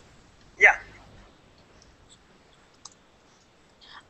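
A single short "yeah" from a voice on a video call, then low room tone with a few faint clicks, the clearest a little before the end.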